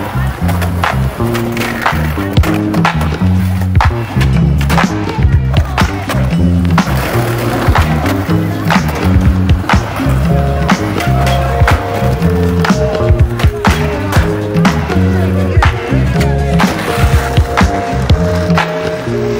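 Skateboard on concrete: wheels rolling, with many sharp pops and landing knocks scattered throughout, mixed under loud background music with a heavy bass line.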